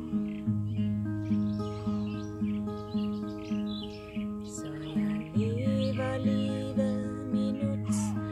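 Acoustic guitar with a capo, fingerpicked in a steady pattern of about two notes a second, with birds chirping in the background.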